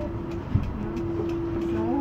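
Electric metre-gauge train heard from inside the driver's cab as it moves slowly into a station: a steady whine that drops out briefly about half a second in, with a single clunk, then resumes.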